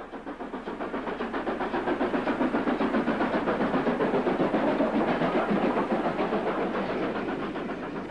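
Stanier Class 5 4-6-0 two-cylinder steam locomotive working hard up a severe gradient, its exhaust beating in a steady rhythm. The sound grows louder over the first few seconds as the engine comes closer, then eases slightly near the end.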